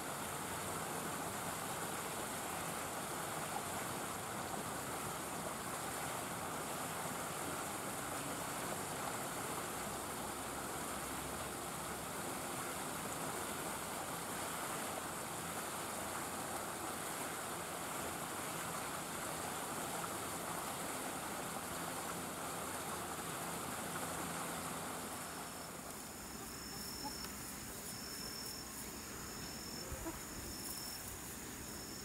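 Steady rushing outdoor background noise. Near the end it quietens, and an insect starts chirping in short, high, evenly repeated pulses about once a second.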